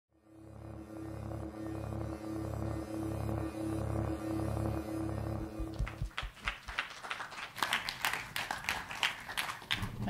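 Electronic intro music: a low bass drone pulsing about twice a second under steady held tones, fading in at the start. About six seconds in it gives way to a run of sharp, irregular clicks and crackles.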